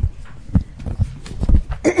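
Four dull knocks about half a second apart: handling noise at a podium microphone as papers and the mic are moved about.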